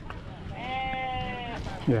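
An animal bleating once: one steady call of about a second.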